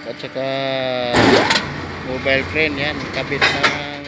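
A voice singing long "ah" notes over the steady hum of a construction hoist elevator in motion, with a loud burst of noise about a second in.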